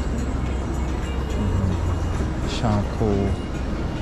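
Steady low rumble of street traffic, with a man's short spoken word near the end.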